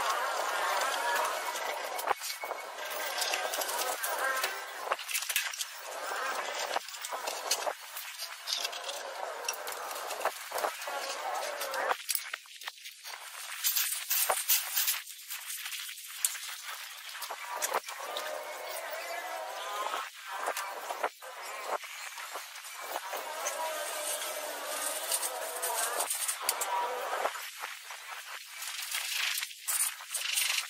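People talking, not in English, with scattered short scrapes and knocks from a hand tool spreading and levelling a damp sand-cement floor screed.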